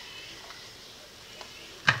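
Omelette cooking in a non-stick frying pan, giving a faint, steady sizzle with a couple of faint ticks.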